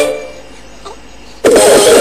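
Recorded song music: a sung phrase ends, leaving about a second of quiet, then loud music with a fast, busy rhythm cuts in abruptly about one and a half seconds in.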